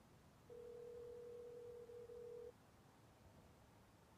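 A single steady electronic beep tone, held for about two seconds starting half a second in, with two tiny breaks near its end, over near-silent background.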